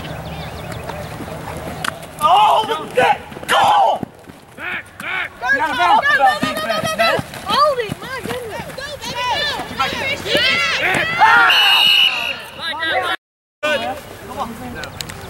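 Men's voices shouting and calling out during a flag football play, with the loudest yells about two to four seconds in. The sound drops out completely for a moment near the end.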